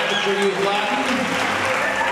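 Audience applauding, with voices over the clapping.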